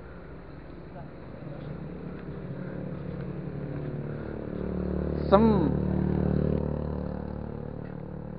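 A passing motor vehicle's engine: a low drone that grows louder to a peak about six seconds in, then fades away.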